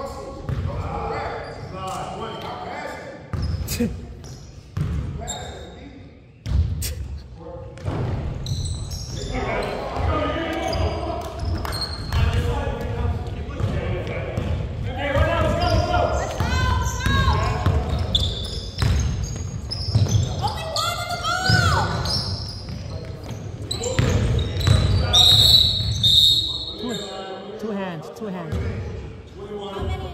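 Basketball bouncing on a hardwood gym floor during play, repeated knocks that echo in the large hall, mixed with players' indistinct voices.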